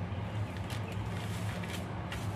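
Faint knife taps and scraping as minced octopus paste is pressed into shiitake mushroom caps, over a steady low hum.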